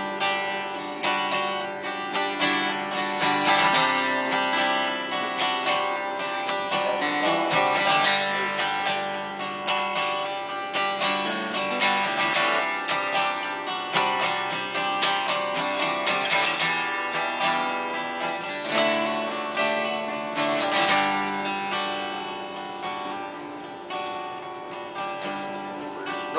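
Acoustic guitar strummed in a steady rhythm, playing an instrumental passage between sung lines of the song with no voice.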